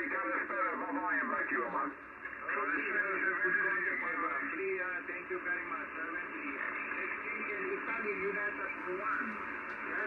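Single-sideband amateur radio voices from a communications receiver on the 20-metre band: several stations calling over one another in a pile-up. The sound is thin and cut off above the treble by the receiver's filter.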